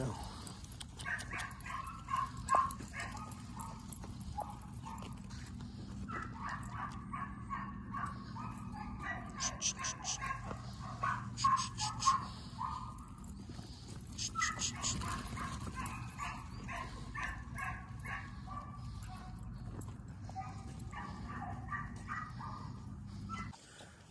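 A dog barking and yipping in repeated short bursts, over a steady low hum.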